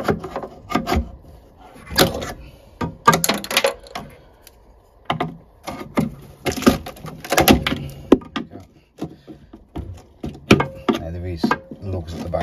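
A flat-blade screwdriver prising at the plastic retaining lugs of an Ideal Logic combi boiler's condensate sump: clusters of sharp clicks, knocks and snaps every second or two as the lugs are levered off the heat exchanger.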